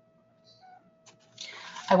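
Near silence over a faint steady electrical whine, with a small click about a second in, then a sharp intake of breath as a voice starts speaking at the very end.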